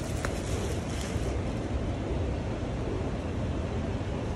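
Steady low rumbling background noise, even throughout, with one light click about a quarter second in.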